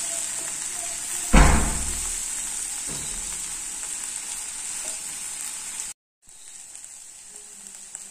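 Potato strips, shallots and green chilli sizzling in a kadai as they are stirred with a wooden spatula, with a loud knock of the spatula against the pan about a second and a half in and a lighter one about three seconds in. Near the end the sound drops out briefly and the sizzling comes back quieter.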